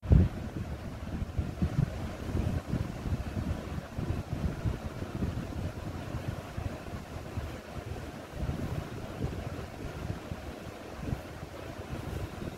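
Irregular low rumbling and buffeting of moving air on the microphone, with a thump right at the start.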